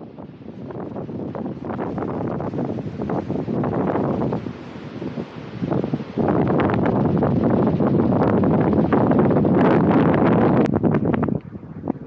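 Wind buffeting the microphone outdoors, in uneven gusts. It fades in at the start, grows stronger about halfway through, and dips briefly near the end.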